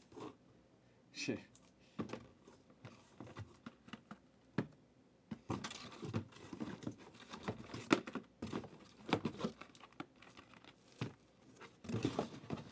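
Cardboard trading-card boxes being handled and opened by hand: scattered taps, scrapes and crinkles of cardboard and wrapping, sparse at first and busier in the second half.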